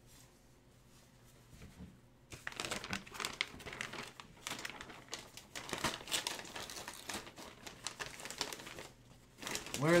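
Crinkling and rustling of plastic card packaging as trading cards are handled, starting about two seconds in and stopping shortly before the end.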